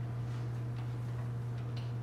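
A steady low hum in a quiet room, with a couple of faint ticks.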